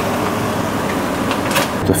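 Ground beef sizzling in a frying pan: a steady hiss with a few faint crackles, over a low steady hum.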